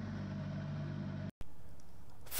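Steady low drone of a Tu-95MS bomber's contra-rotating turboprop engines, heard from aboard the aircraft. It cuts off abruptly about one and a half seconds in, and a faint background hiss follows.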